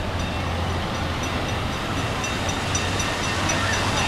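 Steady rush of water pouring and splashing from a water-park play structure, with a low steady hum underneath.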